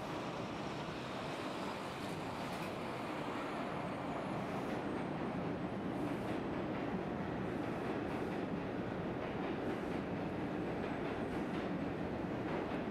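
Steady rumble of city street traffic, with passing cars and trucks blending into one continuous noise.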